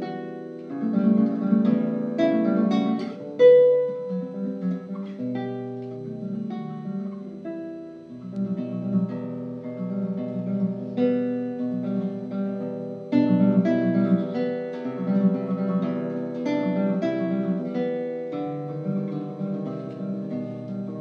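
Solo classical guitar played continuously: a plucked melody over low bass notes, with a sharp louder accent about three and a half seconds in.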